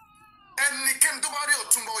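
Speech: a voice talking in Yoruba, starting about a quarter of the way in after a brief faint lull with a thin, slightly falling tone.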